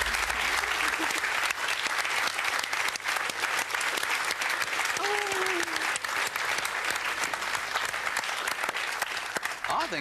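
Studio audience applauding, a dense steady clapping, with one short voice calling out about halfway through; the applause dies away just before the end.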